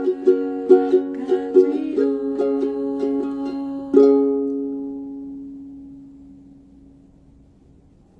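Capoed ukulele playing the last bars on its own: a run of plucked notes and chords, then a final chord struck about four seconds in that rings out and fades away over the next few seconds.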